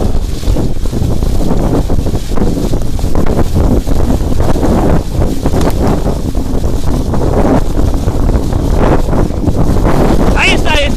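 Wind buffeting the microphone of a bicycle-mounted camera as the bike rolls fast over a rutted, muddy trail, with frequent knocks and rattles from the bike over the bumps.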